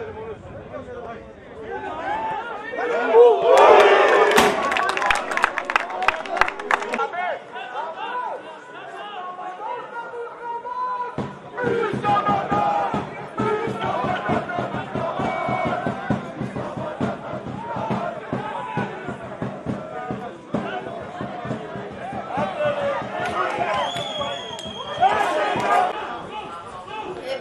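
Football match sound: shouting from spectators and players, with a loud burst of crowd noise a few seconds in, and a commentator's voice in places.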